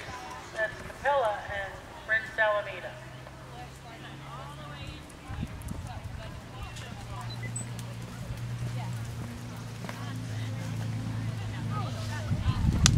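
A horse's hoofbeats on sand arena footing as it comes down from a canter to a trot and walk, with people's voices over the first few seconds. From about five seconds in, a steady low hum runs under it.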